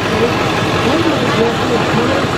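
Engine of a parade float's tow vehicle running steadily as the float passes close by, with voices mixed in underneath.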